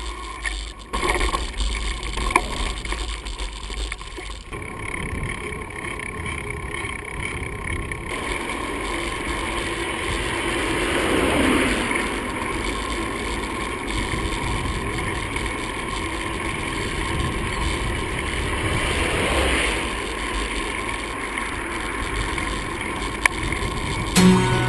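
Steady wind and road noise on a GoPro's microphone while riding a mountain bike along a paved road, with a few sharp clicks in the first couple of seconds and two broad swells of louder rushing noise, one about halfway through and one near the end.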